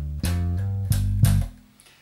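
Electric bass guitar played slap style, with the thumb striking the strings and the index finger pulling them: a short funky phrase of sharp, percussive low notes. The last note rings and dies away about one and a half seconds in.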